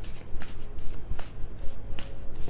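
A tarot deck being shuffled by hand: cards slapping and sliding against each other in a quick, irregular run of soft clicks.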